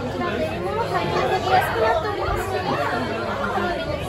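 Overlapping chatter of many diners talking at once in a busy restaurant dining room, with no single voice standing out.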